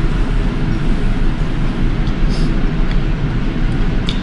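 Loud, steady background noise, an even low rumble with hiss above it, with a couple of faint ticks about two to three seconds in.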